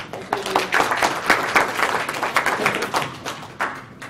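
Audience applauding: many hands clapping at once, dying away shortly before the end.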